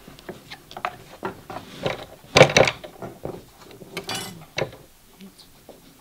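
Irregular clicks, taps and scrapes of hand tools being worked and handled on a clay relief and a wooden workbench. The loudest scrape comes about two and a half seconds in.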